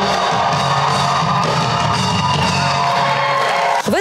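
Live rock band playing electric guitar and drum kit, loud and steady, cutting off abruptly near the end.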